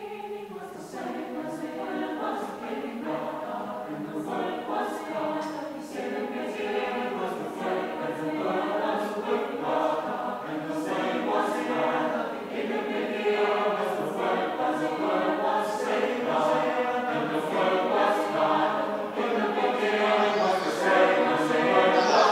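Mixed-voice college choir singing unaccompanied, in sustained phrases that build gradually louder toward the end.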